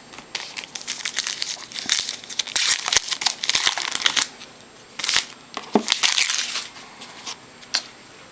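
A shiny trading-card pack wrapper crinkling and tearing as it is opened by hand. The crinkling is dense for the first four seconds or so, then comes in two shorter bursts.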